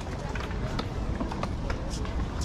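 Skatepark ambience: scattered sharp knocks and clacks of skateboards on concrete over a steady low rumble, with people chattering in the background.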